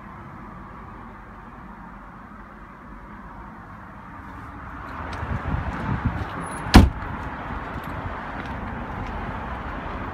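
Quiet car cabin, then the driver's door of a BMW X6 opening, with movement and outdoor background noise rising. The door is shut once with a single hard thump about two-thirds of the way through.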